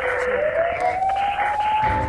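TV news bumper transition sound effect: a synthetic tone gliding slowly upward over a steady hiss.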